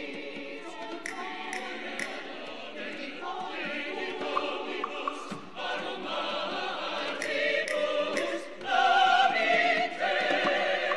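Mixed church choir singing, with crisp 's' consonants sounding together and the choir swelling noticeably louder near the end.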